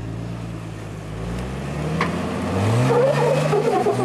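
A Jeep Wrangler's engine revving up under load as it climbs a steep rock ledge, its pitch rising about a second and a half in. A sharp knock comes about two seconds in, and the tyres scrabble and spin on rock and sand through the second half.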